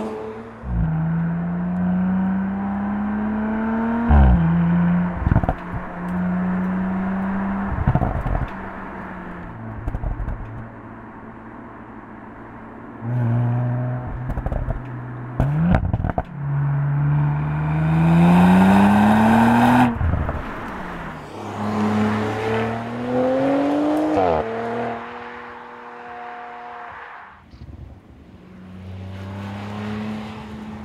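Audi RS 4 Avant Competition Plus's 2.9-litre twin-turbo V6 pulling hard through the gears with the RS sports exhaust plus. The pitch climbs and falls back sharply at each upshift, several times, with sharp cracks on the shifts.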